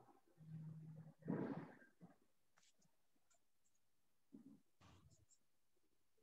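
Near silence: room tone in an empty room, broken by a few faint, indistinct distant sounds, a short low hum and a brief muffled noise early on and another faint low sound near the end.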